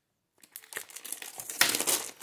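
Pages of a paperback school workbook being leafed through: a run of paper rustles that starts about half a second in and grows louder toward the end.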